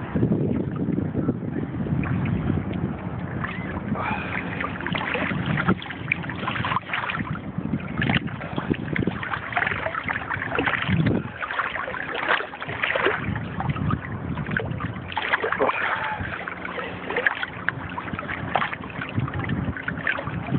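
Small sea waves lapping and splashing right beside a phone microphone held just above the water, uneven and surging, with wind buffeting the microphone.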